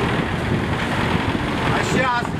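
Diesel engine of a KAMAZ road-maintenance truck fitted with a sand spreader, running steadily as the truck drives slowly and turns.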